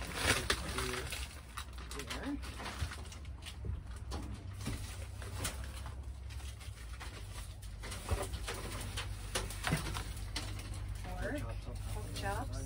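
Frozen food packages being handled and set down on a table, with plastic bags crinkling and a few sharp knocks, over a steady low hum. A few short low coos come through.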